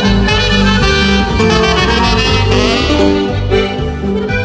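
Live norteño band playing an instrumental break between sung verses of a corrido, a saxophone carrying the melody over bass guitar.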